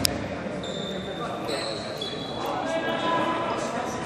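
Basketball game sound in an echoing gym hall: a sharp knock of the ball at the start, then thin high squeaking tones and players' voices.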